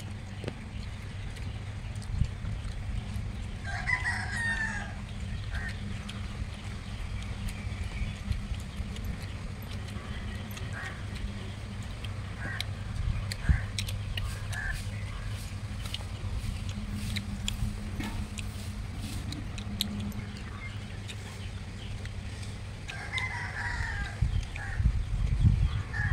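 A rooster crows, once about four seconds in and again near the end, over a steady low hum and scattered small clicks from eating by hand.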